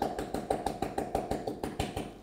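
Rapid light tapping, about eight taps a second, from a small white cup being tapped to sift cocoa powder onto milk foam; it stops abruptly at the end.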